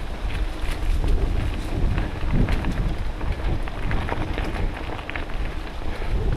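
Wind buffeting a helmet-mounted camera's microphone while mountain biking on a dirt trail, with a steady low rumble and scattered clicks and rattles from the bike and tyres over the ground.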